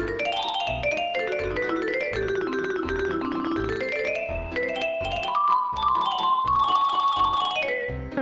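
Computer playback of a notated jazz solo: fast runs of notes climbing and falling over a chord accompaniment with a low pulse about twice a second. About five seconds in, the line settles on a long held high note.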